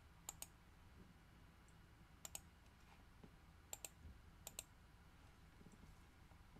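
Faint clicks of computer input, four quick pairs of clicks, over near-silent room tone.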